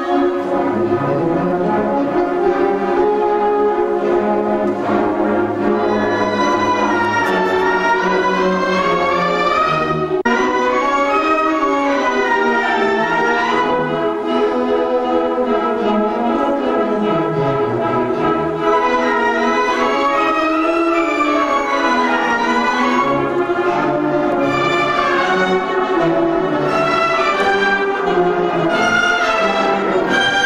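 Secondary-school concert band playing, with trumpets and clarinets among the brass and woodwinds, in one continuous passage of melody over sustained low parts.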